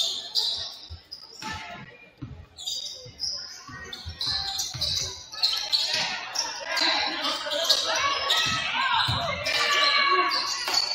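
Basketball dribbled on a hardwood gym floor, with sneakers squeaking and players' voices calling out, all echoing in a large gym.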